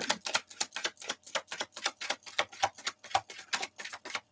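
Tarot cards being shuffled by hand: a rapid run of light clicks and slaps, about eight or nine a second.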